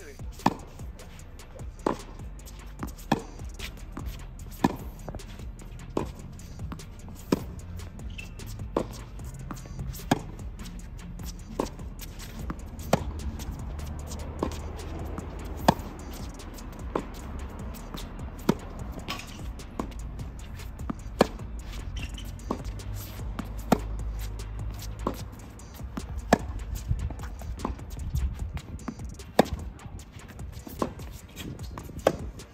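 Tennis balls struck with racquets in a rally, a sharp pock about every second and a half, over background music.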